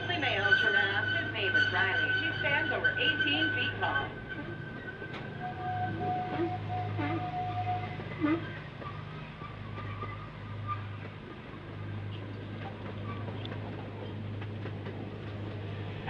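Zoo train running along its track, a steady low hum from the ride, with voices in the first few seconds.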